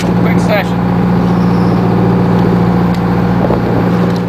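Boat engine running with a steady, even low hum. A brief higher gliding sound comes about half a second in.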